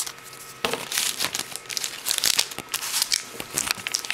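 A Yu-Gi-Oh Stardust Overdrive foil booster pack wrapper crinkling as it is handled, a dense run of crackly rustles starting about half a second in.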